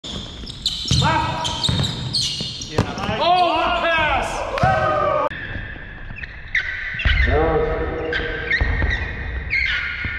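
A basketball bouncing on a hardwood gym floor, with sneakers squeaking and players calling out, all echoing around the large hall.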